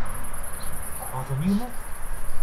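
A steady, high-pitched insect trill from the weedy vegetation, with a brief low hum of a woman's voice about a second in.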